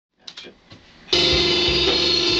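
A few faint clicks, then a rock track with drum kit starts abruptly about a second in and plays on loudly. It is the song being played back in the studio for guitar and bass overdubs.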